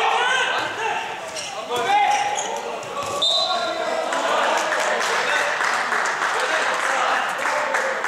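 Handball bouncing on a sports hall floor amid voices, with a short steady high whistle about three seconds in, followed by a dense wash of crowd noise.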